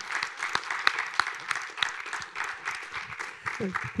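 Audience applauding at the end of a lecture, the clapping thinning out near the end.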